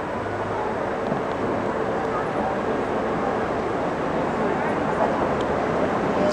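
Steady rushing outdoor ambience at a roadside inline speed-skating race, with indistinct voices mixed into the noise.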